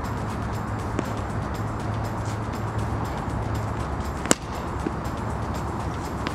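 A single sharp crack of a cricket bat striking the ball about four seconds in, with a couple of fainter knocks, over a steady background hum.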